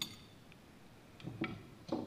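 Light metallic clinks and clicks from handling a motorcycle slide-valve carburetor. A sharp clink with a brief ring comes right at the start, then a few softer clicks near the end.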